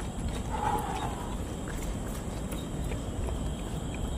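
Footsteps on the elevated park walkway, faint scattered steps over a steady low outdoor rumble.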